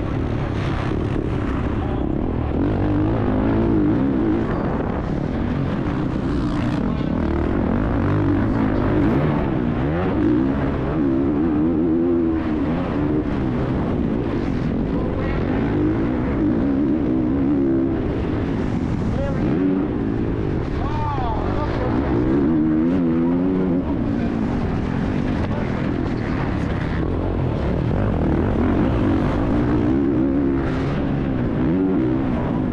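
Onboard sound of a Honda CRF450R's four-stroke single-cylinder engine at race pace on a motocross track. The revs climb and drop again and again as the rider accelerates, shifts and brakes through the turns and jumps.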